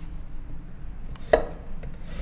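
A knife slicing through fresh ginger root onto a wooden cutting board, with one sharp chop about a second and a half in.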